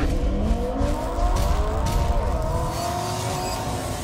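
Car engine sound effect revving up, its pitch climbing steadily, with a few sharp hits laid over it.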